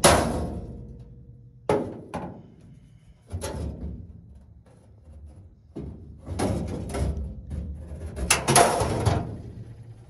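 Steel truck dash panel clanking and banging against the cab as it is worked loose and pulled out, a string of metal knocks with ringing after them, the loudest at the start and a flurry of bangs from about six to nine seconds in.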